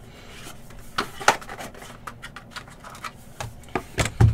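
Trading cards and their plastic sleeves and holders being handled and shuffled out of a box. A faint rubbing runs under several sharp clicks and taps, the loudest about a second in.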